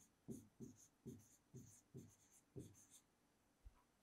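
Faint strokes of a pen writing a word on a board: about six short squeaks, each dropping in pitch, over the first three seconds.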